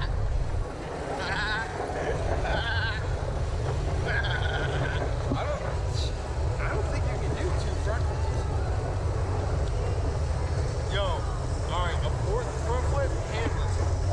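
Wind rumbling on the microphone of a camera mounted on a swinging Slingshot ride capsule, with men laughing and calling out without clear words now and then.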